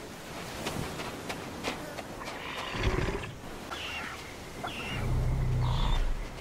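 Sound-designed Tyrannosaurus rex vocalizations: deep low growls, a short one about three seconds in and a longer, louder one near the end, among short high chirps from the young tyrannosaurs.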